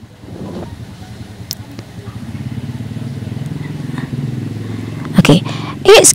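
A motor vehicle's engine, a low hum that grows steadily louder over about four seconds and drops away about five seconds in, like a vehicle passing by.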